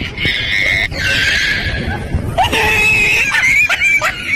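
Loud, high-pitched human screams: a short shriek, a harsh rasping burst, then one long held scream near the end.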